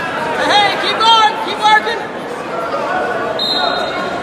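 Gymnasium crowd murmur with a spectator shouting loudly three times in quick succession in the first two seconds. A brief thin high-pitched tone sounds near the end.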